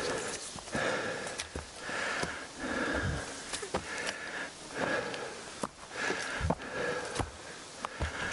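A hiker breathing hard while climbing a steep trail, roughly one breath a second, with scattered knocks of footsteps and a pole on the ground.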